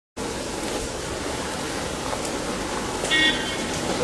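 Road traffic noise from vehicles driving past, with a short horn toot about three seconds in.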